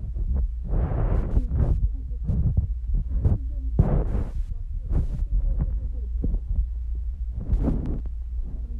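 Handling and walking noise on a phone microphone carried down a store aisle: a steady low rumble with irregular knocks and rustles.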